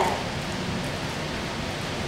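A steady, even hiss with no speech: the room tone and recording noise of the hall.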